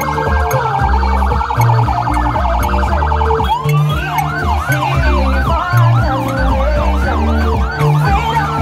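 A siren, most likely the police motorcycle escort's, sounds a fast pulsing warble. About halfway through it switches to a quicker up-and-down yelp, sweeping two or three times a second, over music with a heavy bass line.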